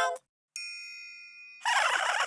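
A single bright bell-like ding that rings and fades for about a second, then cuts off; right after it, high cartoon bird chirping starts up.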